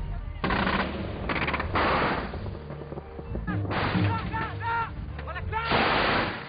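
Bursts of automatic fire from a truck-mounted twin-barrelled anti-aircraft gun: five bursts, some a single sharp crack and one a rapid run of shots, with the loudest burst near the end.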